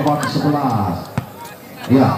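Commentator speech over the court, with one sharp smack about a second in, a volleyball being struck.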